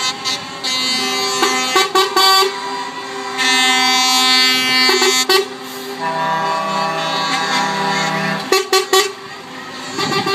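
Lorry air horns sounding from passing trucks: several long blasts at different pitches, the last one lower, then a few quick short toots near the end.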